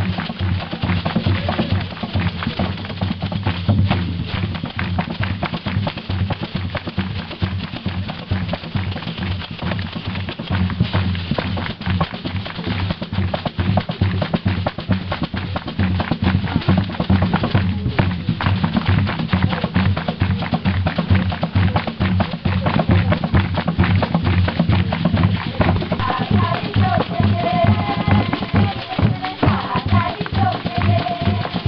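Music of fast, steady drumming, with voices singing that come in near the end.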